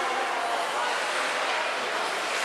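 Echoing ice-arena ambience: distant, indistinct voices of children and spectators over a steady hiss of skates on the ice.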